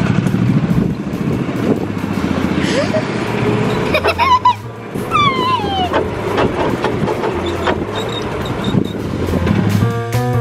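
Golf cart driving along, a steady low rumble of the cart and its ride with wind on the microphone. A child's high exclamation, falling in pitch, rings out about five seconds in.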